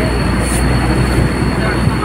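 Steady low rumble of a moving vehicle's engine and road noise, heard from inside the vehicle, with a thin steady high whine over it and faint voices in the background.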